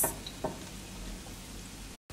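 Chopped mushrooms sizzling faintly in olive oil and butter in a pot, with one light knock of a utensil against the pot about half a second in.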